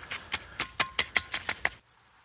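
Thin pond ice cracking and crunching as a glass jar is pushed through it: a quick run of sharp clicks and cracks, about six a second, that stops near the end.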